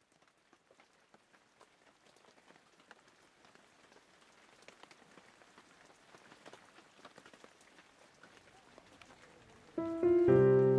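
A faint, dense patter of small clicks, like rain on a surface, slowly growing louder. Just before the end, music comes in suddenly and much louder, with held notes.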